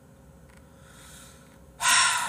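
A man's soft breath close to the microphone, then near the end a sudden loud rush of noise that fades away slowly.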